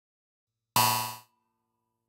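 A single electronic percussion hit from a DIY six-voice analog synthesiser playing a SynDrum-style patch. It is metallic and clangy, with a sharp attack a little under a second in, and it dies away within about half a second, leaving a faint thin tone behind.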